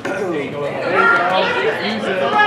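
Indistinct chatter of several voices talking and calling out in a large indoor hall.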